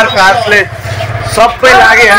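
A young man's voice speaking loudly close to the microphone, with a pause about a second in where a low steady hum underneath can be heard.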